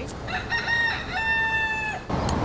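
A rooster crowing: a few short broken notes, then one long, steady held note that cuts off near the end.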